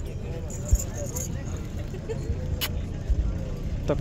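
Faint background chatter of men's voices over a steady low rumble, with a few short clicks.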